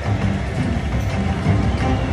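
Red Festival slot machine's bonus-round music playing steadily while the board respins, over dense background noise.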